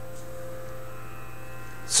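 Steady low electrical hum with a few faint, even tones above it: mains hum in the microphone's amplification chain, heard in a gap in the speech.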